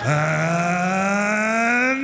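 A man's voice holding one long, drawn-out vowel that rises slowly in pitch, in the manner of a ring announcer stretching out the end of a fighter introduction. It starts abruptly and is loud.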